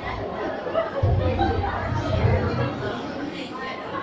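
Indistinct chatter of several voices in a large, echoing hall, with music underneath.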